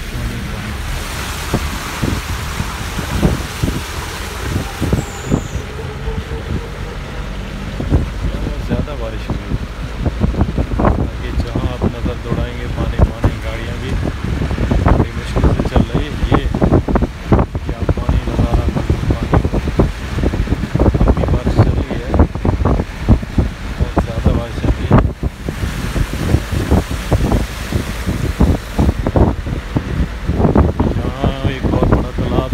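Vehicle driving through heavy rain, a low steady rumble, with wind buffeting the microphone in frequent irregular gusts that grow stronger about ten seconds in.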